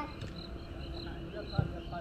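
An insect, a cricket by its sound, chirping steadily at about three short high chirps a second. About a second and a half in there is a single sharp thump of a football being kicked. Faint distant shouts of players sit under both.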